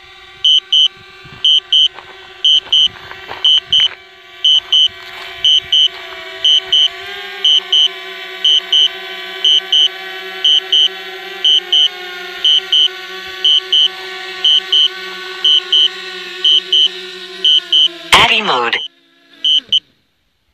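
Quadcopter drone's propellers humming steadily as it descends to land, getting louder as it comes close, with a regular double beep repeating about once a second. Near the end there is a loud burst and the hum stops as the drone sets down.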